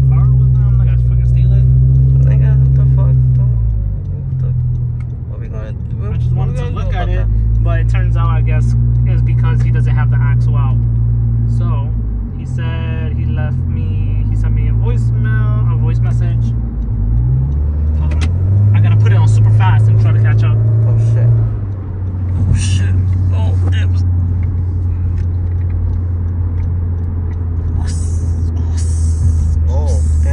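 A voice inside a moving car's cabin, over a loud low drone that holds steady and shifts in pitch every few seconds.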